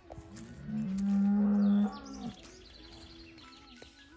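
One of the cattle mooing: one long, low, steady moo about a second in, lasting about a second, then trailing off.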